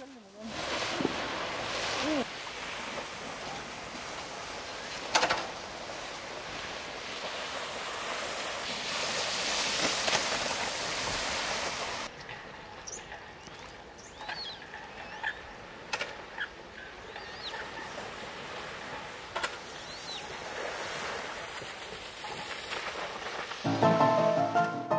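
Steady rushing noise of wind and lake water that swells and then drops off suddenly about halfway through. The quieter second half has faint, short, high chirps from waterbirds on the lake and a few soft ticks.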